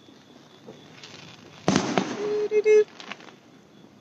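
Aerial fireworks bursting at a distance: a sharp bang a little under halfway through that dies away quickly, followed by a fainter pop about a second later.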